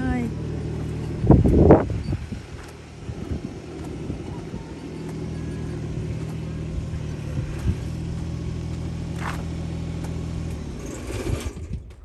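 Small engine of a ride-on utility vehicle running steadily as it drives off down a gravel lane, with a brief loud burst about a second and a half in. The engine sound stops shortly before the end.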